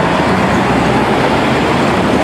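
Street traffic: cars, among them 1950s American sedans, driving past close by, a steady, even rush of engine and road noise.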